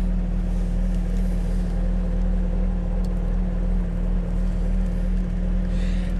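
Supercharged 6.2-litre LT4 V8 of a 2015 Corvette Z06 idling steadily, heard from inside the cabin as a low, even hum.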